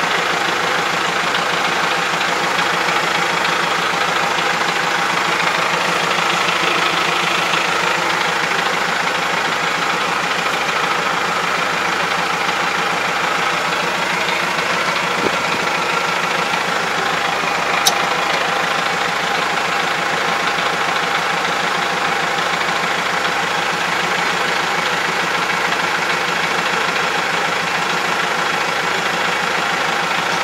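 Kubota 44 hp tractor's diesel engine idling steadily while the harrow is hitched. Two brief clicks sound a little past the middle.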